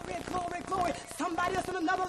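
A voice calling out without clear words, over quick sharp claps or clicks.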